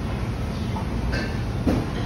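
Steady low background rumble of a buffet dining room, with a single short clack near the end.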